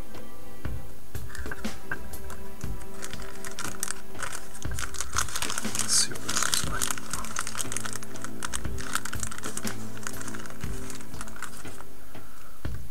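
Clear plastic packaging bags crinkling and crackling as they are handled, a dense run of sharp crackles that peaks about halfway through, over steady background music.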